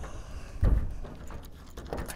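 Steel electrical cabinet door being pushed shut: a dull thump just over half a second in, then a light click near the end.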